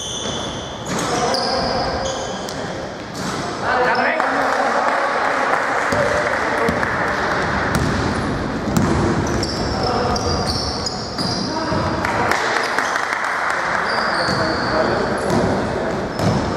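Basketball game on a hardwood gym court: the ball bouncing, sneakers squeaking in short high chirps, and players' voices calling out across the hall.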